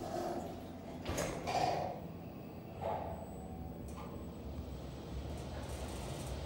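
Schindler 400AE elevator's sliding doors closing, with a few short knocks and rustles; the loudest comes a little after a second in. A low hum rises near the end as the car gets ready to move.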